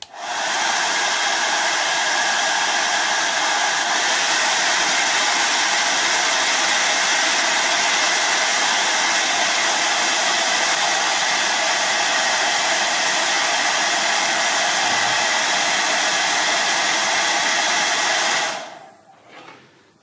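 Hair dryer switched on, running steadily with a loud rush of air and a whining motor, then switched off near the end and winding down over about a second.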